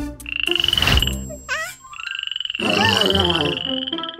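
Cartoon frog croaking sound effects: two long, rapidly pulsing trills, the first about a second long and the second about two seconds, with a short sliding squeak between them.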